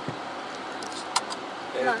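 Steady car cabin noise as the car creeps through a car park, with a low thump at the start and a single sharp click just past halfway. A voice starts right at the end.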